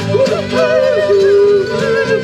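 Live folk-rock band with a high voice singing "down, down, down" in long notes that slide up and down in pitch, over fiddle, mandolin and acoustic guitar.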